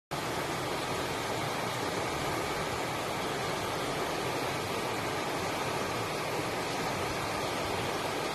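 Steady, even rushing background noise with no distinct events in it.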